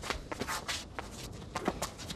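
Quick scuffing footsteps on stone paving and clothing swishing, with a few short sharp slaps as arms strike and block during a fast sparring exchange. The sounds come in a quick cluster in the first second and again a little past halfway.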